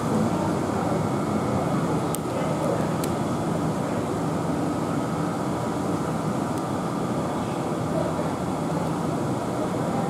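South Western Railway Class 450 electric multiple unit standing at the platform, giving a steady hum with a faint high tone, and faint voices of people on the platform.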